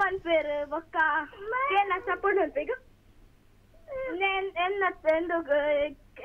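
A caller's high-pitched voice heard over a telephone line, thin and cut off above the telephone band, with a pause of about a second near the middle.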